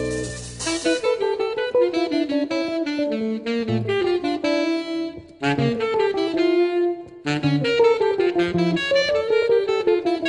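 Jazz quartet recording: a saxophone plays a fast improvised line of quick notes over a walking bass, with short breaks in the line about five and a half and seven seconds in.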